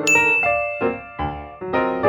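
A bright ding chime strikes right at the start and rings on, fading over about a second and a half, over a light piano tune.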